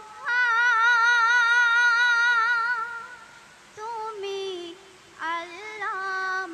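A girl's voice singing a Bengali Islamic gojol into a microphone, with no instruments: one long held note with vibrato for about three seconds, then after a short pause shorter sung phrases.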